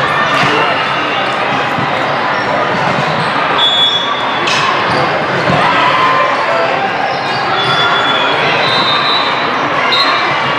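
Din of a busy multi-court volleyball hall: many indistinct voices, volleyballs bouncing on the hard floor, and a few short high squeaks.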